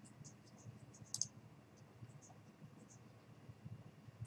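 Near silence, with a few faint computer mouse clicks; the clearest comes a little over a second in.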